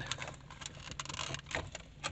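A few small, sharp plastic clicks and rattles as a multi-pin wiring-harness connector is unplugged from the back of a car's climate-control panel, over a faint steady low hum.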